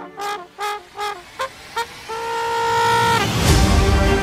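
A solo brass horn plays three short notes with slight falls and two quick blips, then holds one steady note for about a second. Near the end a deep low swell rises into loud trailer music.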